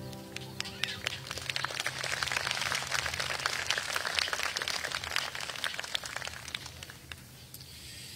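A crowd applauding after a worship band's song, with the band's last chord dying away at the start. The clapping swells, then thins out and fades near the end.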